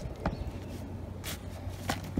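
Pine bark mulch being raked and spread with a hand cultivator: a few short scrapes and rustles, with a faint low hum underneath.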